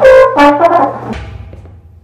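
Trombone playing a short loud phrase that drops from a higher note to a lower one, then breaks off about a second in and dies away.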